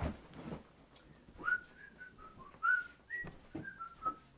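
Rustling and a low knock as a person gets up out of an office chair, then, about a second and a half in, a person whistling a short tune of about ten notes that step up and down in pitch.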